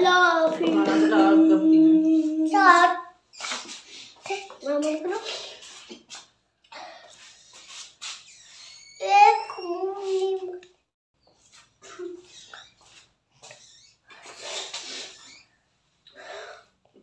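Indistinct voices, among them a child's high voice, talking and calling out in short bouts in a small room.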